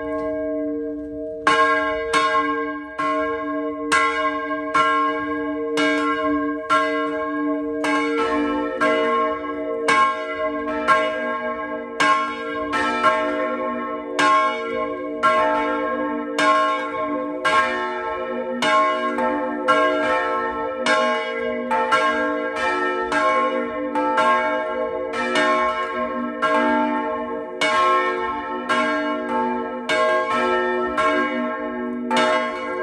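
Two bronze church bells swinging and ringing in the tower. The first rings alone with a steady stroke about every two-thirds of a second; about eight seconds in, a deeper second bell joins and the strokes overlap. The bells are being rung to test the clapper just repaired.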